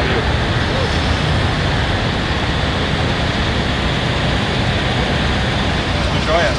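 Steady city traffic noise: a continuous low rumble of car engines running close by in a stopped line of traffic.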